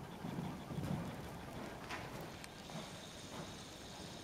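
Dull hoofbeats of a horse cantering on soft sand footing, fading as the horse moves away.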